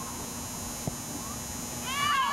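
Outdoor field ambience with a steady low hum and a single knock about halfway through. Near the end, high-pitched shouting voices start up as the ball comes into the goal area.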